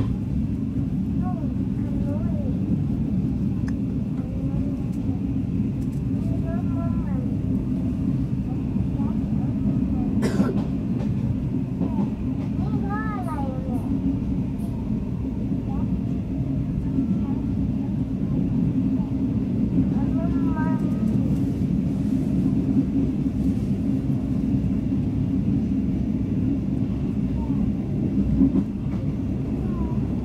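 Steady low rumble of a moving sleeper train's carriage, heard from inside the coach. Faint voices come through a few times, and there is one sharp click about ten seconds in.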